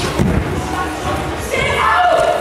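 Dull thuds of kickboxing sparring, a spinning kick and the feet landing on the sports-hall floor, bunched in the first half-second. Music plays underneath, with tuneful sound rising near the end.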